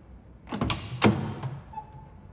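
The driver's door of a 1973 Ford Mustang convertible being opened: sharp clicks of the push-button handle and latch releasing, then a louder single thunk about a second in as the door swings open.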